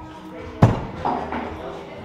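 Thrown axe striking and sticking in a wooden target board: one sharp hit about half a second in, ringing briefly.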